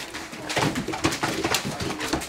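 Great Dane puppies playing rough: low play growls and grunts mixed with a rapid run of scratches and scuffles from paws scrabbling on the bedding and dog cot.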